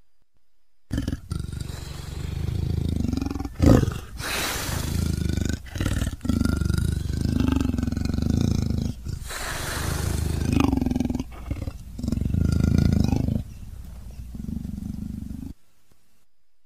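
Big-cat roars and growls voiced for a cartoon black panther, a string of separate calls cut together with abrupt breaks between them. They start about a second in, with a sharp loud burst near four seconds, and stop shortly before the end.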